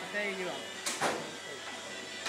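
Voices talking, with two sharp knocks close together about a second in.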